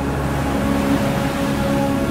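Rough sea surf breaking against a rocky cliff, a steady loud rushing noise, over a low sustained musical drone.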